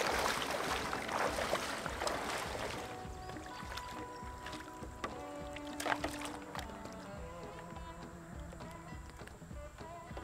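Water sloshing around legs wading in shallow water, with wind noise, for about the first three seconds; then soft background music with long held notes comes in, with a few faint splashes under it.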